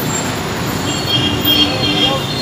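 City bus pulling up alongside in street traffic: steady engine and road rumble, with a high-pitched squeal in the second half as it comes to a stop.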